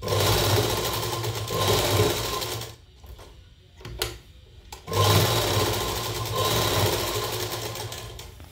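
Table-mounted sewing machine stitching a line through fabric in two runs of about three seconds each. There is a short pause between them with a single click.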